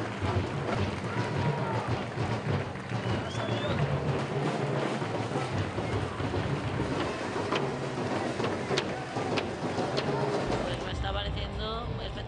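Parade street din: crowd noise mixed with band music, with a few sharp cracks in the second half. Near the end it changes to a quieter scene with a low hum.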